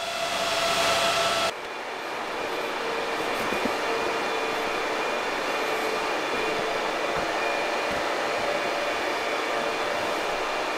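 Steady whir of computer cooling fans from running crypto-mining rigs and a server power supply, with a faint steady hum of a few tones. About a second and a half in, the sound changes abruptly at a cut from a louder hiss to the even fan noise of the mining room.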